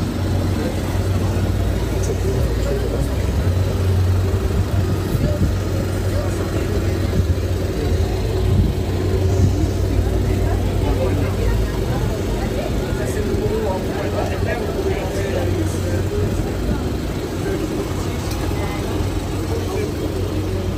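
Busy outdoor street-market ambience: indistinct chatter of passing people over a steady low rumble.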